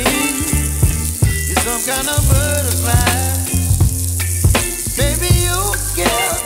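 Green beans sizzling as they fry in oil in a pan and are stirred with a spatula, under background music with a strong bass line and a melody.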